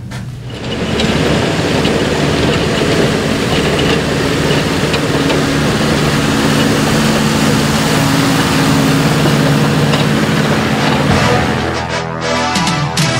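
A loud engine running steadily, with a low steady hum under a broad noise. It comes in about a second in and drops away just before the end.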